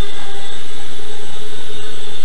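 Small scratch-built carbon-fiber quadcopter hovering, its four FC 28-05 2840 kV brushless motors and GWS 6x3 three-blade props giving a steady whine.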